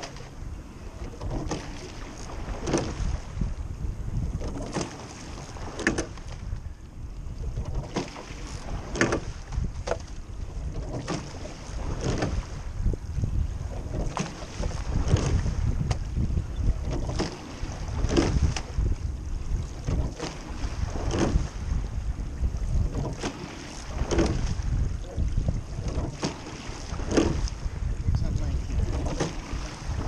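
Rowing eight paddling at an easy, steady rate: a sharp knock of the oars in their oarlocks at each stroke, about once every three seconds, over the low rush of water along the hull and wind on the microphone.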